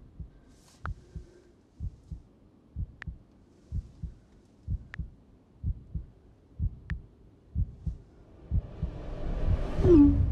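Trailer sound design: a low, slow heartbeat, a double thump about once a second, with a few sharp clicks laid over it. Near the end a rising whoosh swells into a loud hit.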